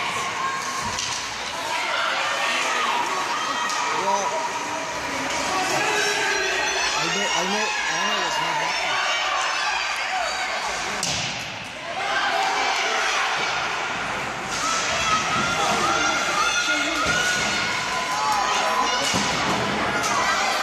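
Youth ice hockey in a rink: spectators talking and calling out over the play, with a few sharp thuds of the puck and players hitting the boards.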